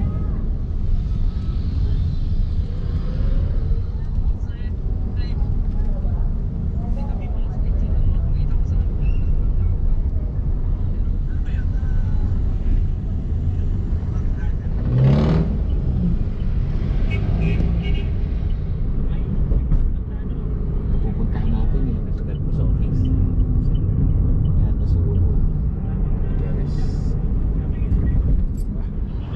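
Steady low rumble of a vehicle driving through city traffic, heard from inside the vehicle, with a short burst of a voice about halfway through.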